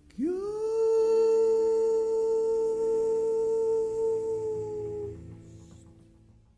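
A single long sung note that scoops up in pitch at the start, is held steady for about five seconds, then fades. A quieter held chord sounds beneath it, ending the song.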